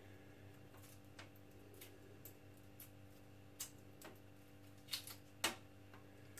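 Faint, irregular little cracks and clicks of a hard-boiled egg's shell being cracked and peeled off by hand, the sharpest click about five and a half seconds in; the shell is coming off easily. A steady low hum runs underneath.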